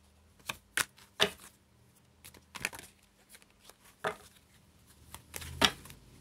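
A deck of oracle cards being shuffled and handled by hand: a series of short, irregular card snaps and flicks, the loudest near the end.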